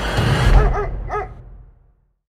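A dog's three short yips, each rising and falling in pitch, over a deep rumble left from the closing music that fades out just before the end.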